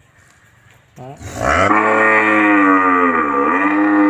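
A cow mooing: one long, loud call that starts about a second in and is held to the end, its pitch dipping briefly partway through.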